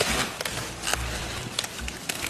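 A knife cutting through the root stalks of yellow-heart napa cabbage, giving a few sharp cracks amid crisp rustling of the leaves.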